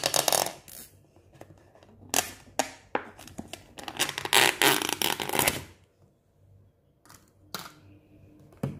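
Thin plastic lid being prised off a takeaway container and lifted away: crinkling, scraping plastic in several bursts, the longest about four to five and a half seconds in, then a couple of light clicks near the end.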